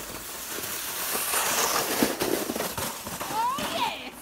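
Plastic sled sliding over snow, a continuous crackling hiss of the runners scraping the snow. Near the end there is a short high squeal that rises and then falls.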